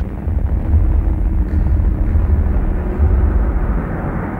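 A loud, steady, noisy rumbling drone with deep bass that swells and falls unevenly and no clear notes: a dark ambient sound-design bed of the industrial-music kind.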